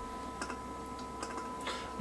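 A faint steady 1 kHz test tone from an AM radio receiving a tone-modulated test signal, with a few soft clicks about half a second, a second and a quarter, and near the end, as the modulation level is turned down.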